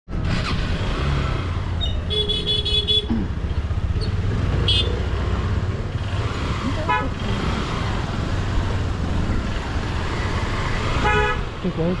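Motorcycle engine running at low speed under street noise, with vehicle horns honking in short bursts: a rapid, pulsing beep about two seconds in and further brief honks near five, seven and eleven seconds in.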